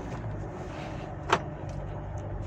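A 2022 Mitsubishi Pajero Sport Dakar's diesel engine and tyres heard from inside the cabin while rolling slowly: a steady low drone, with one short click a little over a second in.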